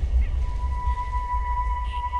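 Eerie TV-drama soundtrack: a deep, steady low rumble under a single sustained high ringing tone that comes in about half a second in.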